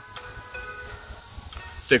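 Insects singing outdoors in a steady, unbroken high-pitched drone.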